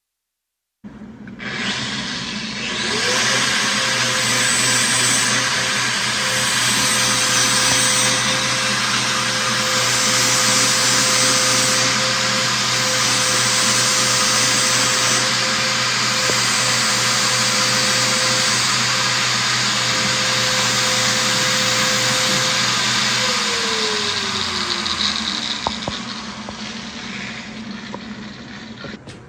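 An electric motor-driven machine starting up about a second in, spinning up to a steady high whine over a hum and loud hiss, running evenly, then switched off and winding down with a falling whine a few seconds before the end.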